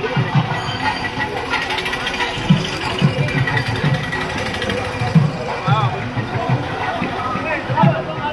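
Festival crowd of many voices talking and calling out over music with an uneven low beat.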